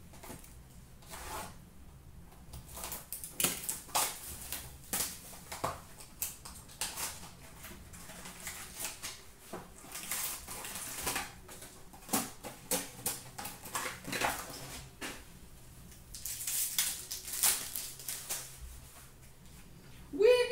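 Upper Deck Trilogy hockey trading cards being handled and sorted by hand: irregular papery rustles and light clicks of card stock, with a denser stretch of rustling near the end.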